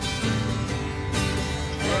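Mandolin strummed along with acoustic guitar in a short instrumental passage of a slow folk song, a singing voice coming back in near the end.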